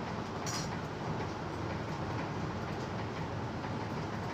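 Chopped onions and tomatoes frying in oil in a nonstick pan: a steady sizzle, with a brief sharp sound about half a second in.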